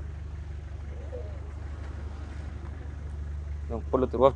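A car engine idling with a low, steady hum; a man's voice starts just before the end.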